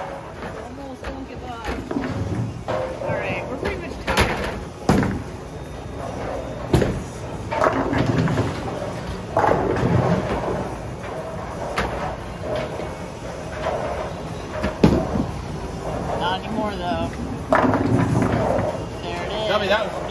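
Bowling alley din: background voices and music, with scattered knocks and thuds of balls and pins.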